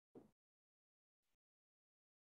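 Near silence, broken by two faint, very short sounds: one just after the start and a quieter one about a second and a quarter in.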